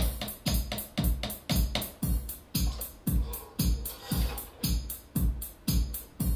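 Electronic drum beat played live on keyboard and pads and looped: a steady kick about twice a second, with snare and hi-hat ticks filling the beats between.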